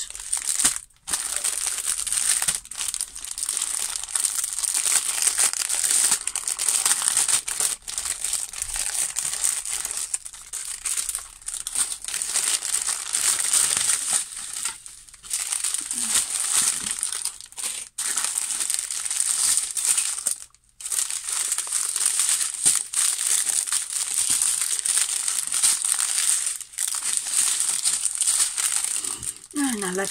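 Clear plastic packaging crinkling almost without pause as it is handled, broken by a few short gaps.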